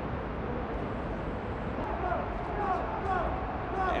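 Steady pitch-side ambience from an empty football stadium, with faint, distant shouts from players on the pitch between about two and three and a half seconds in.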